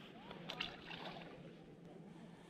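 Faint handling noise from hands working a soft-plastic worm lure and fishing line close to the microphone, with a couple of small clicks about half a second in.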